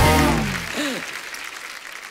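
Studio audience applauding and laughing, dying away over two seconds, with a short comic music sting at the start that falls in pitch.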